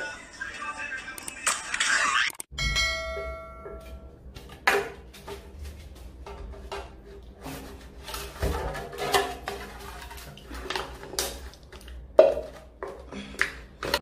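A string of sharp clinks and knocks, with a ringing metallic ping about two and a half seconds in, over music and voices.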